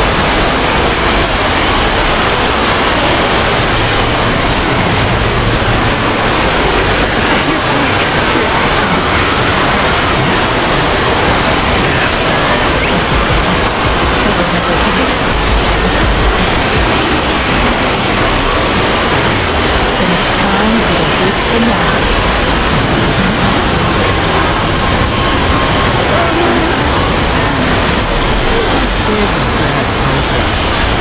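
A dense wall of many cartoon soundtracks playing at once: voices, music and sound effects piled on top of each other so that they blur into a loud, steady noise in which no single voice or tune stands out.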